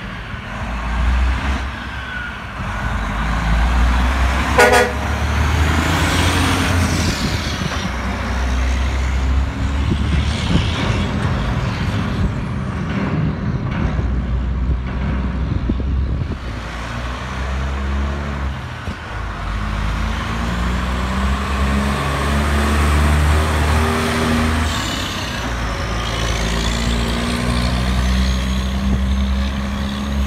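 Heavy diesel trucks passing at low speed, engines running loud and pulling away. A short horn toot comes about four to five seconds in. In the second half one engine climbs in pitch in steps as the truck accelerates through its gears.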